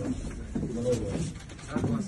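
Men's voices talking low and indistinctly in a small room, an exchange of thanks between two speakers.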